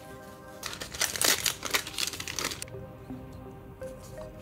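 Soft background music with paper packaging crinkling and rustling for about two seconds, starting just under a second in, as a white Apple Vision Pro retail box is unwrapped.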